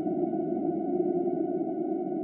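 Trailer score: a sustained synthesizer drone held under the title card, fading slowly.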